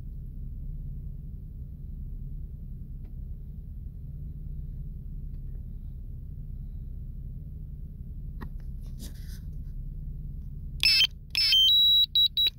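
A steady low rumble, then about a second before the end two loud alert beeps from the DJI Mavic Mini's controller alarm, warning that the remote controller signal to the drone has been lost.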